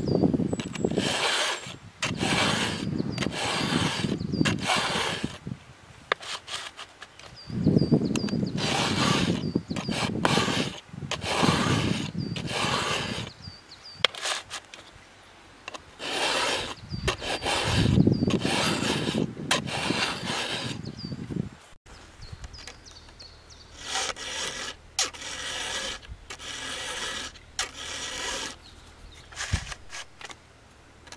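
A double chisel bit file rasping across a chisel saw-chain cutter, steel on steel, filing it square-ground. The strokes come about one to two a second in three runs with short pauses between, then quieter strokes in the last third.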